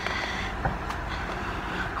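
Steady low rumble of a car heard from inside the cabin.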